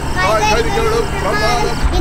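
People's voices in a moving car over the steady low hum of its engine.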